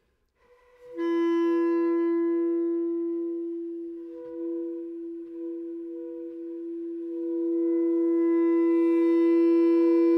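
Contemporary chamber music: woodwinds of the clarinet family hold two long, steady pitched tones. The tones enter after a brief silence about a second in and swell louder in the second half.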